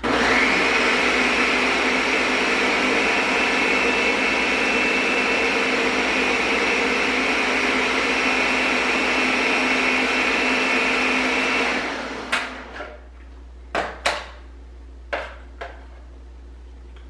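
Countertop blender switched on, rising within half a second to a steady high-speed whine as it purées a fruit-and-spinach smoothie, running for about twelve seconds before winding down. A few sharp knocks follow near the end.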